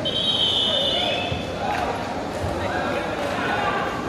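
A referee's whistle blown once at the start, a single high tone held for just over a second and dropping slightly at the end, over the steady chatter and shouts of a crowd in an indoor sports hall.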